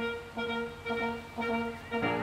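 Small orchestra playing an instrumental link between sung verses: four short, detached notes at a steady pitch, about half a second apart.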